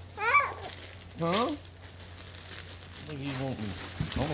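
Wrapping paper crinkling and rustling as a child tears open a present, with two short high-pitched vocal sounds from a small child near the start and a lower voice near the end.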